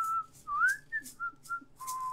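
A woman whistling a short tune: one held note, a rising slide, a couple of short notes, then a lower note held near the end.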